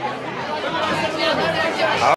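Indistinct chatter: several voices talking over one another, no words clear.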